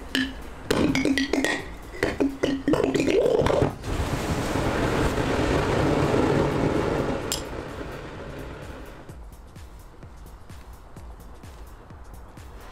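A jet of burning gas rushing out of a glass bottle where calcium hypochlorite pool chlorine is reacting with DOT 3 brake fluid. It is a steady rushing noise that starts about four seconds in, builds, and fades after about seven seconds, with one sharp crack near its end. The first few seconds hold short pitched notes of music.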